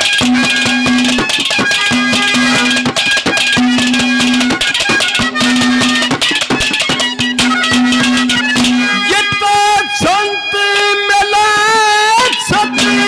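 Live Haryanvi ragni folk accompaniment: a harmonium repeats a short held melodic phrase over fast, dense hand-drum strokes. About nine seconds in, a male singer comes in with a long, wavering sung line over the instruments.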